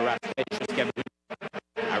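A French play-by-play commentator's voice breaking up: the audio drops out abruptly several times, leaving choppy fragments of speech, then goes dead for almost a second before the voice returns near the end.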